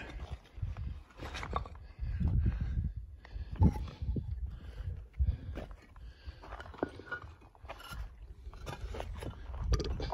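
Wind buffeting the microphone in uneven low gusts, with footsteps scuffing on sandstone and loose rock and a few sharper knocks.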